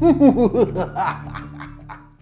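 A man's theatrical mock-villain laugh, a quick run of 'ha-ha' bursts, loudest at the start and trailing off, over background music that fades out near the end.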